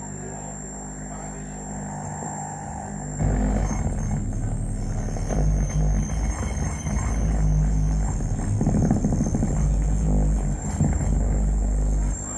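Live electronic drone-noise music from a mixing desk and analog gear: a low hum with a few steady tones, which swells into a loud, heavy low rumble about three seconds in and stays loud.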